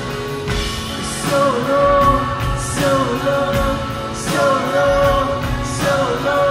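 A live rock band playing: acoustic guitar, electric bass and drums, with cymbal washes about every second and a half. Long held sung notes ride over the band.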